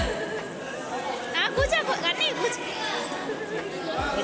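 Chatter of several people talking at once, with a high voice calling out in rising and falling tones in the middle.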